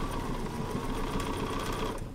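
Sewing machine running steadily with a steady whine, stitching a seam through quilt pieces, and stopping near the end.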